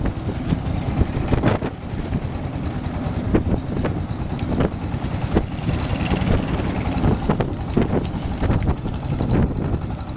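Small engine of a long-tail boat running steadily at speed, with spray and water rushing along the hull and frequent crackles of wind on the microphone.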